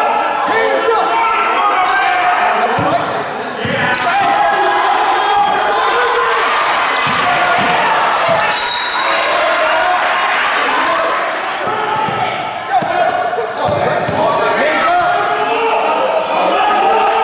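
Indoor basketball game: a basketball bouncing on a hardwood court with scattered sharp knocks, under continuous shouting and talking from players and spectators, echoing in a large gym.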